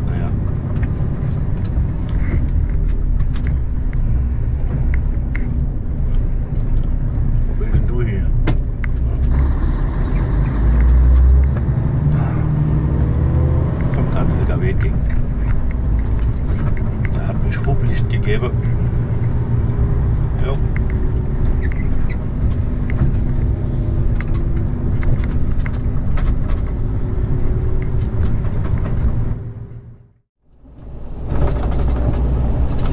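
Steady low drone of a Mercedes-Benz Actros SLT heavy-haulage tractor's diesel engine and road noise, heard inside the cab while driving, with a brief louder rumble about ten seconds in.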